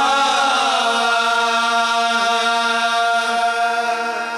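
Qawwali singing: voices sliding into and holding long sung notes over a steady harmonium drone, with no drumming.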